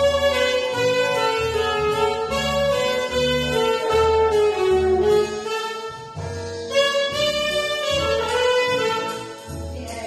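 Tenor saxophone playing a slow melody of long held notes with some bends, over an accompaniment with a steady repeating bass line.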